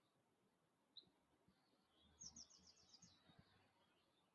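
Near silence with faint bird calls: one short high chirp about a second in, then a quick trill of about seven high notes in the middle.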